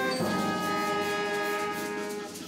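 A small band playing a slow piece in long held chords, moving to a new chord about a quarter second in that then fades slowly.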